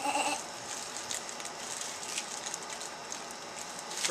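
A short laugh, then faint, uneven crinkling of plastic bags as small bagged toys are handled.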